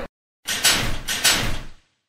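Sound effect of a stadium scoreboard's panels sliding and clacking into place, in two strokes about two-thirds of a second apart.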